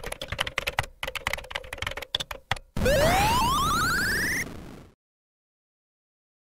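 Rapid typing on a computer keyboard for nearly three seconds, then a loud electronic tone that rises in pitch in small steps and fades out about five seconds in, all part of an intro sound effect.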